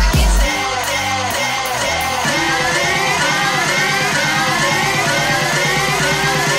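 Electronic dance music from a DJ mix. The heavy kick drum drops out about half a second in, leaving a breakdown of fast repeating synth notes, and a rising sweep builds from about two seconds in.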